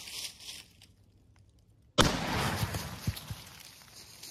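A single .30-30 rifle shot about two seconds in, sudden and by far the loudest sound, its bullet smashing through a row of hedge apples. The report fades over about a second, with a few softer thumps after.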